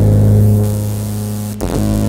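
Synthesized electronic drone from a light-sensor-controlled sound installation: a steady stack of low sustained tones, played by a hand moving over the sensors. It is broken by a brief glitchy sweep about one and a half seconds in, then the drone resumes.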